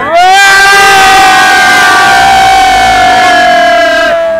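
A long, loud, high-pitched yell held on one note by bus passengers: it starts abruptly with a rise in pitch, holds for about four seconds, then sags. A second, lower voice joins for about the first second.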